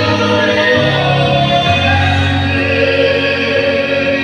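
Music: a choir singing a slow song over sustained bass notes that change about once a second.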